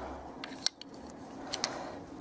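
Small plastic toy pieces of a Playmobil coffee maker clicking and tapping as they are handled and fitted together: a few light clicks, the sharpest about two-thirds of a second in.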